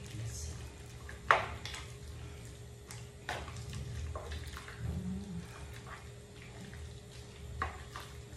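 Wooden spatula stirring and tossing noodles and vegetables in a nonstick frying pan, with scattered knocks and scrapes against the pan, the sharpest about a second in, over a steady low hum.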